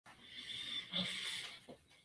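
A man's faint breathing close to the microphone: two soft breaths, the first with a slight whistle, just before he starts to speak.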